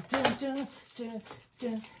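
A man humming a few short, level-pitched notes of a tune, ending in a brief laugh.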